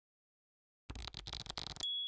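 Logo sound effect: a brief noisy rush with a few clicks, then a single high, bell-like ding near the end that rings on and fades.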